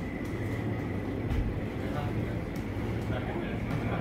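Room ambience: a steady low hum with a faint, steady high-pitched whine, a few light clicks, and faint voices in the background.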